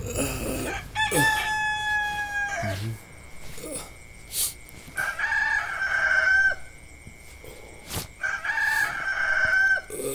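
Rooster crowing three times, each a long held call that falls away at the end, with a faint steady high tone underneath.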